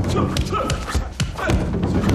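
Added fight sound effects for a martial-arts exchange: a rapid string of sharp punch, block and whoosh hits, several a second, with short grunts, over a film score with a steady low pulse.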